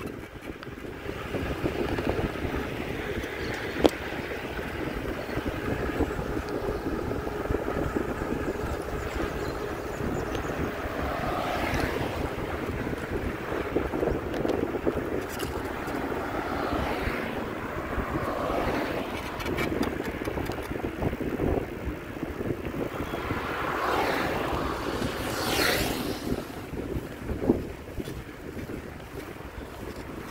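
Wind rushing over the microphone as the camera moves along a street, over a steady rumble of road and traffic noise, with a few brief louder swells.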